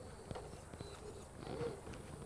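Faint, irregular clicks and knocks of an RC rock crawler's tyres and chassis against rock as it crawls slowly over the stones.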